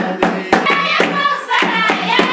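Group hand clapping in a steady rhythm, about four claps a second, with voices singing a melody over it and a steady low hum underneath.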